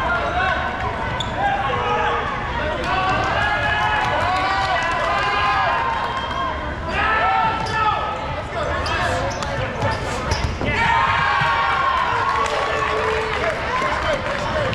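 Dodgeball players shouting and calling to one another, their voices overlapping, with rubber dodgeballs bouncing and smacking on the gym floor, several impacts coming in the second half.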